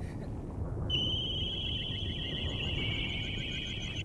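Synthesized anime sound effect: a steady, high-pitched electronic tone with a slight warble starts about a second in over a low rumble. It holds until it is cut off by a sudden blast at the very end.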